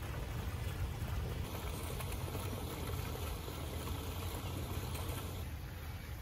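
Steady low rumble of outdoor background noise, with a faint hiss above it and no distinct event standing out.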